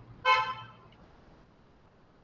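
A single short, steady horn-like toot about a quarter second in, fading within half a second, followed by faint room hiss.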